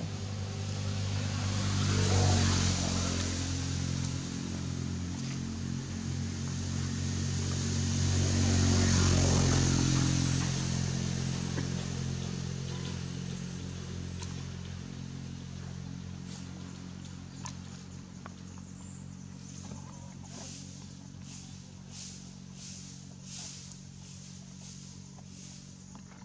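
A motor engine's low, steady hum that swells louder twice in the first ten seconds and then slowly fades, like motor vehicles passing by. Faint, evenly spaced clicks or taps come in near the end.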